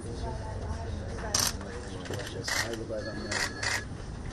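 Room sound of people greeting each other in an office: faint murmur of voices over a steady low rumble, with four short rustling noises.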